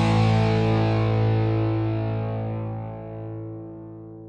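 Intro music: a single distorted electric guitar chord, struck just before and left ringing, slowly fading away.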